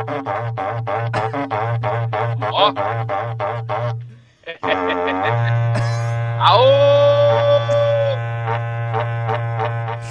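A berrante, the Brazilian cattle-herding horn, being blown: a long low drone that pulses rhythmically, breaks off briefly about four seconds in, then sounds again and swoops up to a higher held note before dropping back to the drone.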